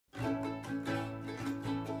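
Ukulele and acoustic guitar strummed together in a steady rhythm, starting just after the beginning.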